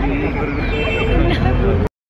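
A man and a woman laughing and making low vocal sounds over a steady low background rumble, all cutting off abruptly near the end.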